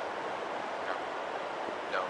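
Steady, even wash of ocean surf.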